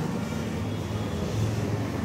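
A steady low hum with an even background hiss.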